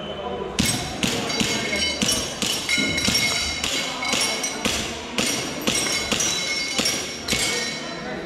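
A rapid string of about fifteen airsoft pistol shots over some seven seconds of a timed stage, beginning about half a second in, most followed by the ringing ping of a metal target being hit.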